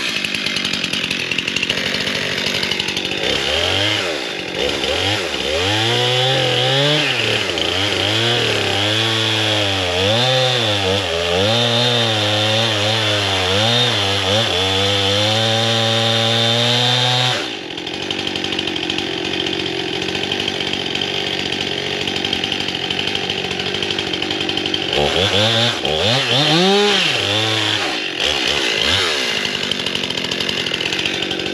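Chainsaw cutting into a standing tree trunk, putting in the felling notch, its engine speed rising and falling as the chain bites. About halfway through it drops suddenly to idle, then cuts again near the end.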